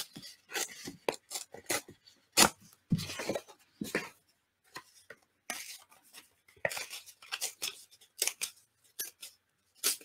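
A sheet of printed paper being torn by hand, deliberately for a rough torn edge, in irregular short rips, followed by the rustle of the small torn piece being handled. The loudest rips come a couple of seconds in.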